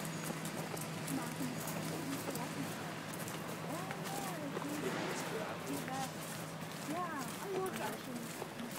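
Background chatter of many voices at once, with frequent footstep clicks and a steady low hum underneath.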